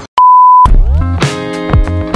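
An edited-in, censor-style bleep: one loud, steady, high beep about half a second long. Background music starts straight after it.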